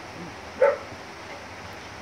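A dog's single short bark about half a second in, over a steady background hiss.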